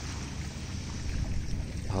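Beach ambience: a steady low rumble of wind on the microphone with a soft hiss of gently lapping sea.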